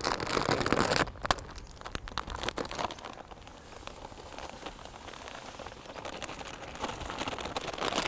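Plastic bag of dry groundbait crinkling as it is handled and opened. Then the fine, crumbly powder pours out of the bag into a plastic bucket with a soft, even hiss.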